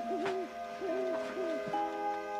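An owl hooting, a short series of hoots, over soft sustained background music.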